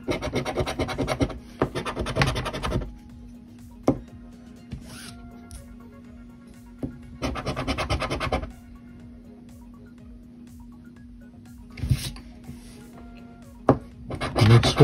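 A coin scratching the coating off a scratch-off lottery ticket in quick rasping strokes: a spell of about three seconds at the start, another about seven seconds in, and a short one near the end.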